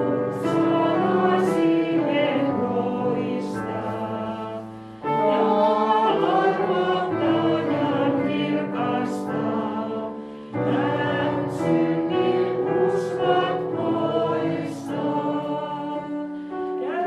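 Voices singing a Lutheran hymn, the closing hymn of the service, in sung phrases with short breaks between them about five and ten seconds in.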